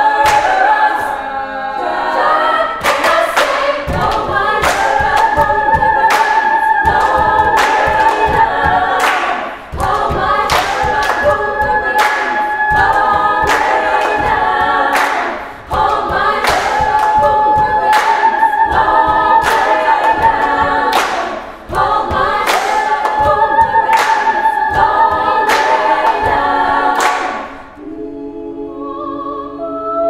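Female choir singing a cappella over a steady beat of sharp percussive hits, the phrases breaking off briefly about every six seconds.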